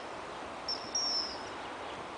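A high, thin bird call about two-thirds of a second in: a short note followed by a longer one that falls slightly, over a steady outdoor hiss.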